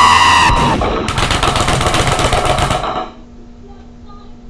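Cartoon fight sound effects from an animation: a loud held yell, then a rapid flurry of hits lasting about two seconds that cuts off suddenly about three seconds in.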